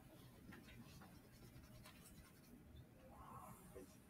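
Faint scratching of a pen on notebook paper, drawing a line, with a brief faint stroke about three seconds in.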